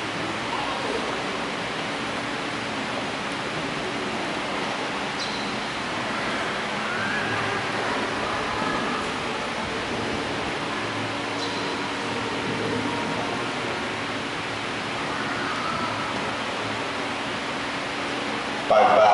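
Steady, even hiss of background room noise, with faint indistinct sounds now and then and no clear events.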